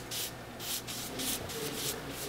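A coating brush swept back and forth across paper, spreading platinum-palladium emulsion in about four short hissing strokes, roughly two a second.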